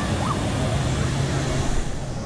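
Busy wave pool ambience: a steady wash of water with the distant, overlapping voices of a crowd of swimmers.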